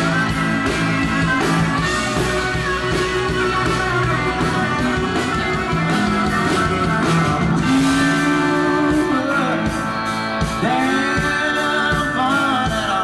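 Live country band music: electric guitar playing over bass and drums with a steady beat, no words sung.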